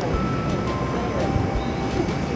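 Steady, even rushing noise of outdoor ambience, wind and distant city sound, with a few faint sustained tones behind it.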